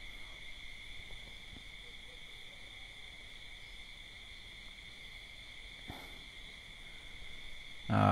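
Two steady high-pitched tones hold on over faint background hiss, with one faint click about six seconds in.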